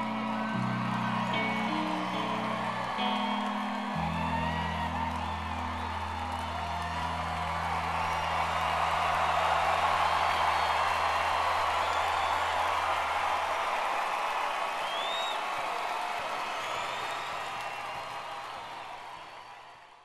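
The song's last electric guitar notes are held and ring out, stopping about two-thirds of the way through. Under them a live audience cheers, whoops and applauds, swelling in the middle, and everything fades out at the end.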